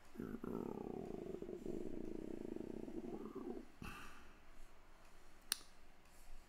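A man's low, creaky, drawn-out hum lasting about three and a half seconds, rising in pitch briefly near its end. It is followed by a short breathy noise and, near the end, a single sharp click.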